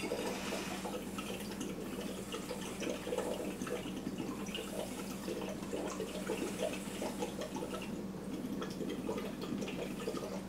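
Exhaled breath blown through a drinking straw into water in a glass flask, bubbling continuously; the breath's carbon dioxide is being bubbled into the water.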